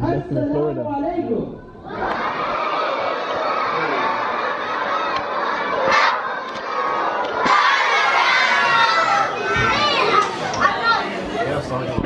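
Large audience in a hall cheering and shouting: a dense mass of voices that starts about two seconds in, after a few words into a microphone, and grows louder about halfway through with many high yells.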